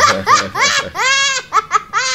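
A young boy laughing in a string of short, high-pitched bursts, with one longer peal about a second in.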